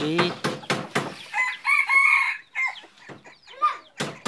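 A junglefowl decoy rooster crows once, about a second in, a pitched call lasting about a second and a half, with a few short clicks just before it.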